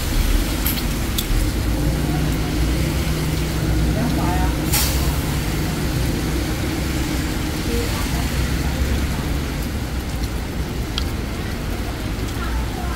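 Steady din of heavy rain mixed with road traffic, a deep rumble underneath, with a few sharp clicks, the loudest about five seconds in.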